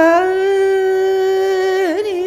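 A Carnatic vocalist holding one long sung note in a thillana, gliding up into it at the start and bending down just before the end, over a steady drone.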